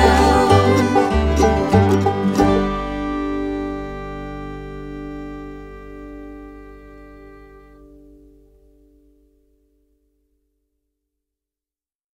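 Bluegrass band with banjo, guitar, fiddle and bass playing the last bars of a song. It ends on a final chord about two and a half seconds in, which rings and fades away over about seven seconds into silence.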